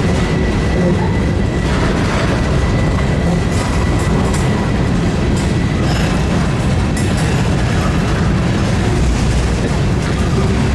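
Mixed freight train rolling past: a steady low rumble of steel wheels on rail with scattered clicks, and a thin, steady wheel squeal from the curve that stops about six seconds in.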